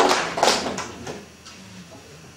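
A small audience clapping, the applause thinning out and dying away within the first second or so, leaving a quiet room.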